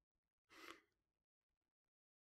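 Near silence, with one faint, short breath out about half a second in.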